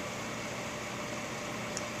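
Steady room noise: an even hiss with a low hum beneath it, unchanging throughout.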